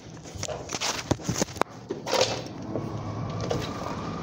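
A run of sharp knocks and clicks from a door and a handheld phone as someone walks out through the entrance, then street background with a faint steady hum.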